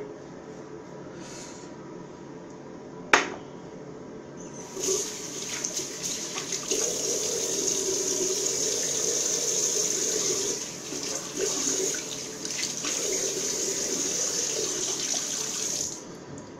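A sharp click about three seconds in, then a bathroom tap starts running about five seconds in and flows steadily into the sink.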